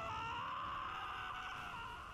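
An anime character's long drawn-out shout, held at nearly one pitch for about two seconds over a steady low noise of battle sound effects.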